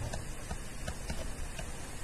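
Stylus tip tapping on a tablet screen while handwriting, a few irregular light clicks over steady room noise.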